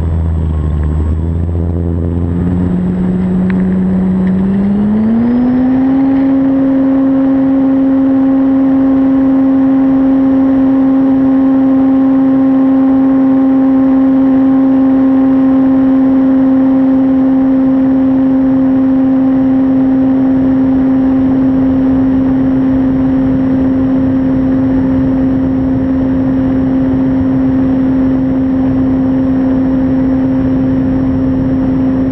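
Model trainer airplane's motor and propeller, heard from a camera on the plane: a steady tone that rises in pitch about four to six seconds in as the throttle opens for takeoff, then holds steady through the climb.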